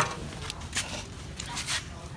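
Pruning shears snipping twigs in the foliage of a fig bonsai, a sharp snip at the start followed by several short crackling rustles of leaves and cut shoots.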